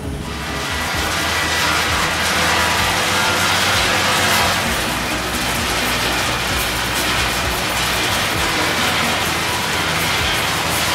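Cashew peeling machine running, a steady, dense mechanical noise with a low hum, as it strips the thin skin off cashew kernels.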